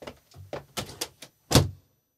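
Several light knocks and clicks of things being handled and packed up, then one louder thump about one and a half seconds in.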